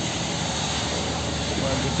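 Steady rumbling background noise, like vehicle engines and traffic running nearby, in a pause between a man's sentences.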